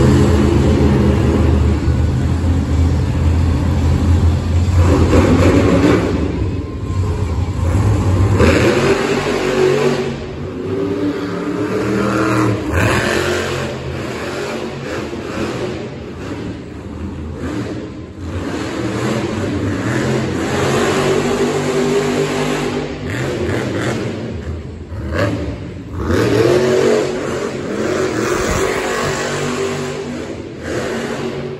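Monster truck's supercharged V8 engine running loud, with a heavy steady drone for about the first eight seconds, then revving up and down repeatedly as the truck drives and launches around the dirt course.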